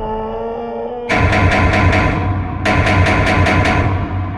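Trailer sound design: a held, eerie tone, then about a second in a loud, rhythmic mechanical-sounding pulsing, about five beats a second, that breaks off briefly and starts again.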